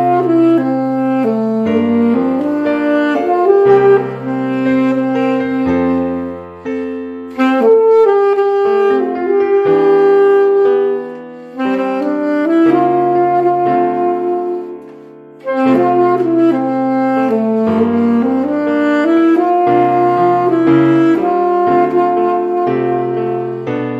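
Alto saxophone playing a slow worship-song melody of long held notes over a piano accompaniment, phrase by phrase with short breaks between phrases.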